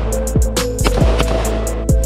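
Background music with a steady electronic beat: deep, falling kick drums, fast hi-hat ticks and a sustained synth tone.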